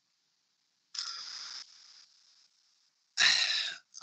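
A man breathing audibly during a pause in his talk: a short breath about a second in, then a brief breathy vocal sound near the end.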